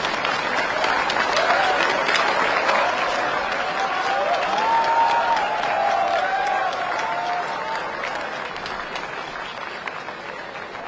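An audience applauding, the clapping swelling quickly and easing off over the last few seconds, with voices calling out over it in the middle.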